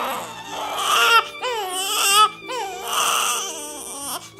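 A newborn baby crying in a run of wavering wails, loudest about one and two seconds in.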